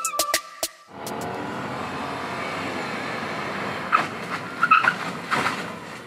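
A Renault Kwid hatchback driving up on a rough tarmac road and braking hard from 60 km/h. Steady running and tyre noise swells into a louder, uneven stretch between about four and five and a half seconds in as it brakes to a stop.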